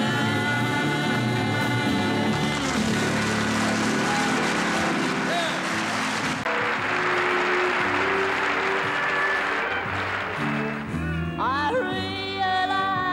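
A live band with electric guitars and piano ends a song on a held chord while audience applause swells over the music. Near the end, a woman starts singing a new song with the band.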